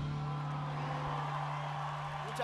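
One steady low note hangs on after a live band's final chord, over a faint, even crowd noise from the audience.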